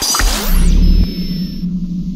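Electronic sound effect for an animated logo reveal. A sudden deep boom hits just after the start. A held low synthetic hum follows, with a thin high tone above it that stops a little before the end.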